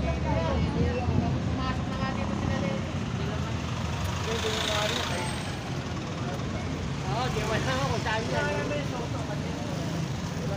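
Street traffic with a steady low engine rumble from motor vehicles, under scattered voices of people talking nearby; a short hiss about five seconds in.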